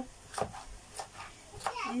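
Kitchen knife knocking on a cutting board a few times, roughly every half second, as an onion is being cut. A woman's voice starts near the end.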